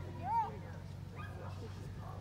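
A dog gives one short whine that rises and falls in pitch, near the start.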